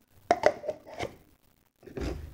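Plastic cups being set onto a plastic cup rack: about four light clacks in the first second, then quiet.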